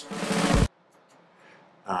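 A short drum snippet sampled from a long drum solo on a jazz record, played back as a fill: well under a second of drums that cuts off abruptly.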